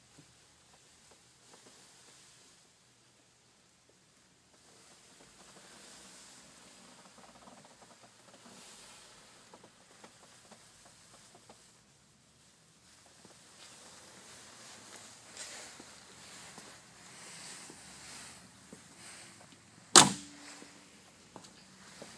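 A single loud slam of the 1964 Corvette's door shutting, about two seconds before the end, with a short ring after it. Faint rustling from the camera being handled comes before it.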